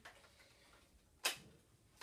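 A single short click a little over a second in, from the plastic Nerf Modulus toy blaster being handled; otherwise a quiet room.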